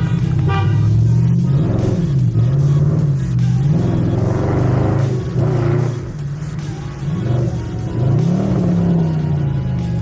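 Chevrolet Camaro engine accelerating, heard from inside the cabin: the revs climb and fall back several times as it pulls away through the gears.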